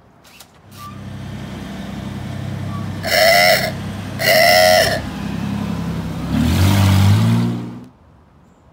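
A 1997 Nissan Pathfinder's V6 engine running, with two honks of its horn about three and four seconds in, then the engine revving up near the end.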